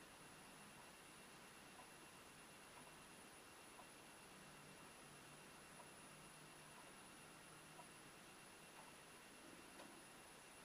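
Near silence: room tone with a faint tick about once a second.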